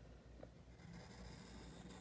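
Near silence: room tone with faint pencil strokes on paper as a line is drawn.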